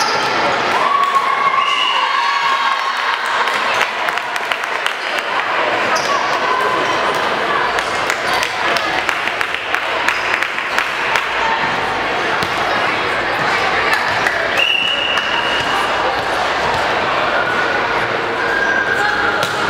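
Echoing indoor volleyball-gym ambience: repeated thuds of volleyballs bouncing and being hit on and over a hardwood court, with players' and spectators' voices and short high squeaks in the large hall. About three-quarters of the way through, a steady high tone sounds for about a second.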